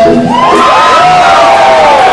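A punk band's song cuts off at the very start, and the club crowd cheers, with several people yelling long shouts.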